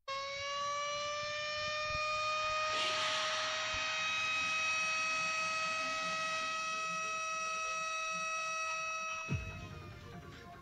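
A single held electronic tone, siren-like, that starts abruptly and slowly rises in pitch, with a short rushing noise about three seconds in. Near the end a low thump sounds and the tone slides down and stops.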